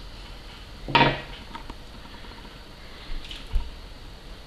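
Small metal hand tools and tackle being handled on a table: a few light clinks and a dull knock about three and a half seconds in, as crimping pliers are put down and a hook picked up. A brief vocal sound about a second in.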